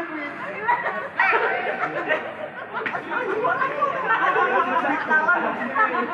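Several people's voices talking over one another in unintelligible chatter.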